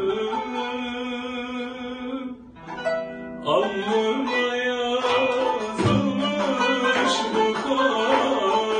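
A Turkish folk song with a man singing long, wavering held notes over a plucked string instrument. The music dips briefly about two and a half seconds in, then returns with a run of stepping notes.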